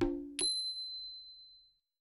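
Closing sting of a commercial's music: a last low chord hit fades, then about half a second in a single bright chime strikes and rings out, dying away.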